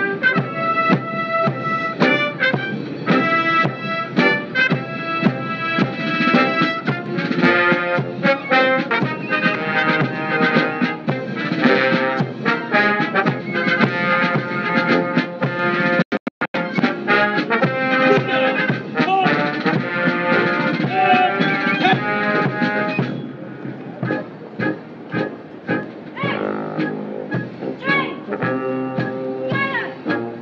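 Military brass band playing live. The sound cuts out briefly a few times about halfway, and the music turns softer about three quarters of the way through.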